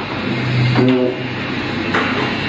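A man's short voiced hesitation sound picked up by a handheld microphone about a second in, over a steady low hum and hiss from the public-address sound.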